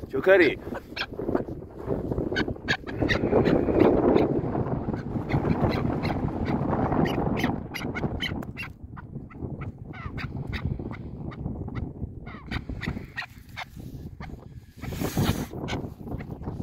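Trapped chukar partridges giving harsh, goose-like calls while one is lifted out of a wire cage trap. Rustling and many sharp clicks from the handling are densest in the first half, and there is a short loud rush of noise near the end.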